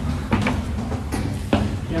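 Brief snatches of a man's voice, with a few short sharp knocks, in a narrow stone stairwell.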